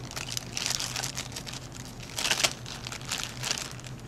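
Clear plastic bag crinkling in irregular bursts as small plastic ramp pieces are handled and pulled out of it, loudest just past the middle.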